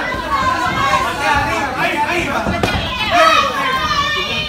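Several voices shouting and talking over one another: a small crowd of spectators and cornermen calling out around a fight in a gym.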